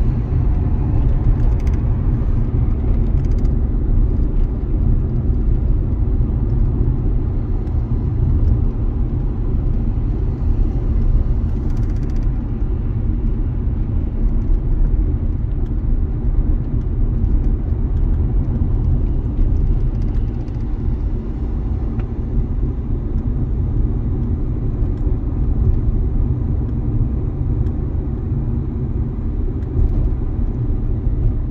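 Steady engine and road rumble of a Dacia car being driven, heard from inside the cabin.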